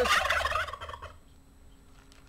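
Guinea hen giving a loud, harsh, rapid rattling cackle that breaks in on a man's sentence and dies away about a second in.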